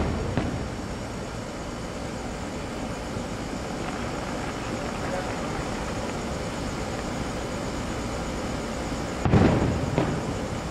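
Distant fireworks shells bursting over a steady background rumble. One boom is fading away as the sound begins, and another loud boom comes about nine seconds in and rolls away.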